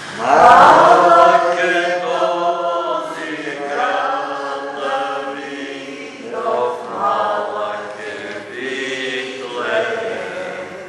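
Church congregation singing together, many voices on long held notes, swelling loudly about half a second in.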